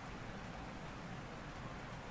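Faint, steady hiss of background noise with no distinct events.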